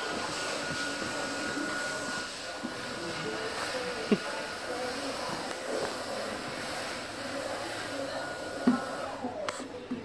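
Electric hand dryer running steadily in the toilets, whirring with a faint whine, then winding down near the end as it switches off.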